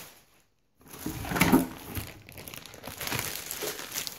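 Plastic packaging crinkling and rustling as it is handled, in irregular bursts with the loudest crinkle about a second and a half in, after a brief silent gap at the start.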